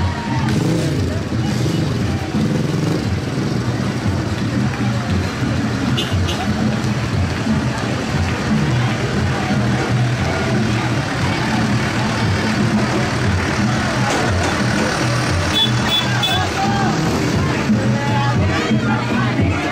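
Engines of slow-moving parade vehicles, a farm tractor among them, running steadily under music and the voices of a street crowd.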